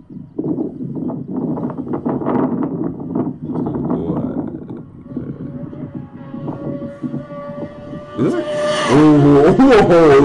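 Road-racing motorcycle passing close at high speed near the end, loud, its engine note sweeping up and then dropping as it goes by.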